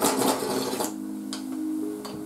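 A loud slurp of about a second as food is eaten straight off the rim of a raised dish, followed by a light click of a spoon against the dish. Soft background music with held notes runs underneath.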